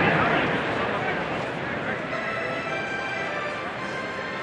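Ballpark crowd murmur, slowly fading, with sustained musical tones coming in about halfway through.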